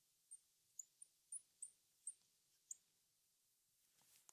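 Faint, short high squeaks of a marker pen writing on a glass lightboard, about seven spread over the first three seconds, with near silence between them.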